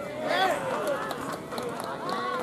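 Voices of an outdoor crowd: several people calling and shouting over one another, with no clear words.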